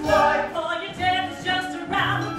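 A stage musical's cast singing a show tune together as a choir, several voices holding notes in harmony.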